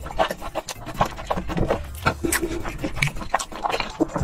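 Close-miked chewing of a mouthful of food: a dense, irregular run of wet smacking and clicking mouth noises.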